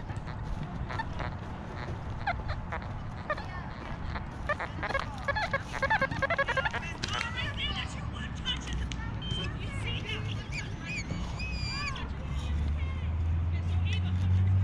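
Distant children's voices shouting and squealing over a low background rumble. A low engine hum swells near the end.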